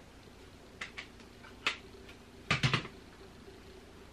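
A few light clicks and knocks from makeup tools being handled: two soft ticks about a second in, a sharper click just after, then a quick run of three louder knocks past halfway.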